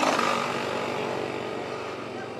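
Motorcycle passing close by on the road, loudest at the start and fading away.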